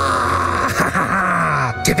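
A man's long, theatrical groaning cry in the manner of a vampire menacing someone. It is one drawn-out voice that slides slowly down in pitch and breaks off shortly before the end.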